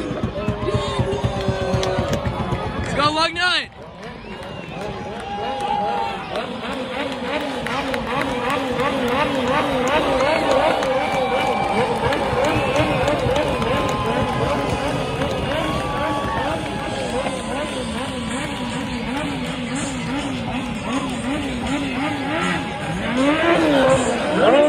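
A small track car's engine revving hard, its pitch rising and falling a few times a second as it spins through burnouts, with a sharp rev up about three seconds in and again near the end.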